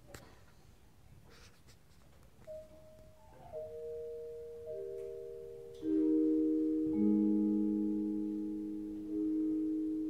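A school concert band begins a piece after a couple of seconds of near quiet. Ringing mallet-percussion notes, vibraphone-like, enter one at a time and stack into a sustained chord. Louder, lower notes join about six and seven seconds in, each fading slowly after it is struck.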